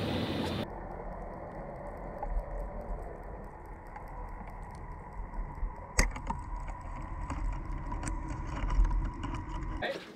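Muffled underwater sound picked up by an action camera in its waterproof housing: a steady low rumble with faint light clicking and one sharp click about six seconds in. A brief moment of open-air noise comes before it.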